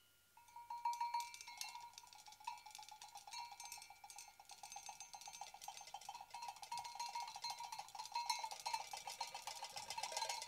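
A drumstick rubbed and tapped rapidly against a small metal object, making a quiet, dense rattle of small clicks over a ringing metallic tone. It starts about a third of a second in and grows busier in the second half.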